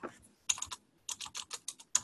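Typing on a computer keyboard: a few separate key clicks, then a quicker run of keystrokes in the second half.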